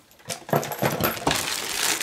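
Small craft items handled on a tabletop: starting about half a second in, a run of light clicks and clinks with plastic rustling, as small glass bottles and corks are set down and a zip-top plastic bag of washi tape rolls is picked up.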